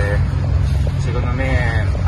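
A man's voice, a held sound at the start and a few short words near the end, over a loud steady low rumble.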